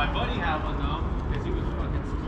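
People's voices talking in the background, one voice clearest in the first second, over a steady low rumble.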